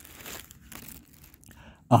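Faint crackly rustling, like paper or cloth being handled. Right at the end a man's voice starts chanting in Quran recitation style.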